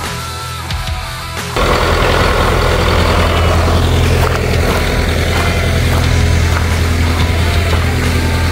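Rock music with guitar, cut off about a second and a half in by the loud, steady running of the International B275's four-cylinder diesel engine as it tows a smaller tractor.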